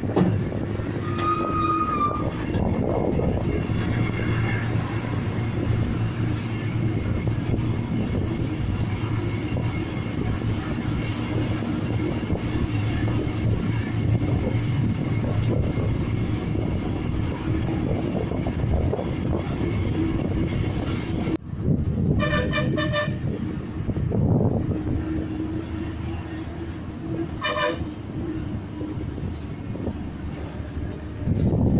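A bus's engine runs steadily, heard from the rear seat inside the bus, with a constant hum and cabin rattle. A vehicle horn sounds a quick run of toots about 22 seconds in, and a single short toot near 28 seconds.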